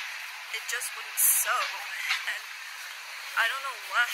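A woman speaking in short bursts, with a faint steady background, and a short loud hiss about a second in.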